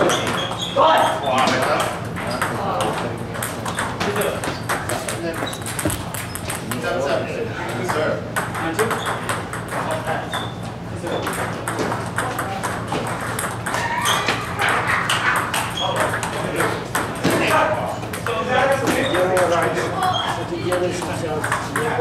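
Table tennis balls ticking off paddles and the table in quick rallies, with more clicks from play at the neighbouring tables, over people talking.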